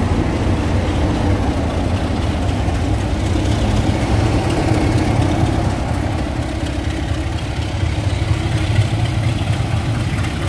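Diesel locomotive engine running with a deep, steady hum, alongside the rumble of a loco-hauled train of coaches moving past.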